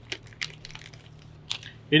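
Faint rustling and small clicks of hands handling and opening the paper wrapper of a cotton-tipped applicator, with a sharper click about one and a half seconds in.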